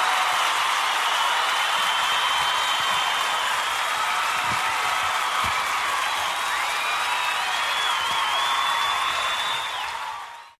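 Audience applauding and cheering at the close of a live gospel song recording, a steady wash of clapping with a few high cries over it, fading out at the end.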